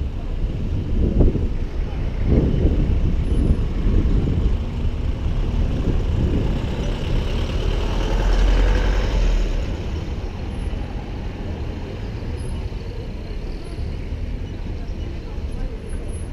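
Town-centre street traffic: vehicle engines running over a continuous low rumble, with one vehicle passing close and loudest about eight to nine seconds in, then fading.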